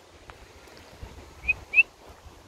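A person whistling two short, slightly rising chirps in quick succession near the end, calling a dog.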